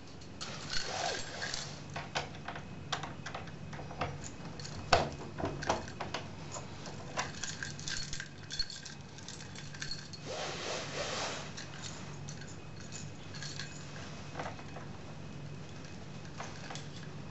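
A bunch of keys jangling and clicking as a key is worked into a door lock: a run of small metal clicks and rattles, the sharpest about five seconds in, over a faint low hum.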